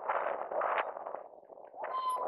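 Inline skate wheels rolling on asphalt among a pack of skaters, a rushing noise that swells and fades with each stride.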